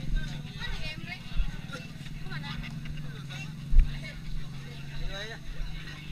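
A motor engine running at a steady pitch throughout, under the talk and calls of a crowd of people, with one heavy thump a little before four seconds in.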